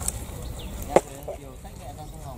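A single sharp knock about a second in as a landing net and its frame are handled on a wooden fishing platform, with a smaller click at the start, over a steady low background rumble and faint distant voices.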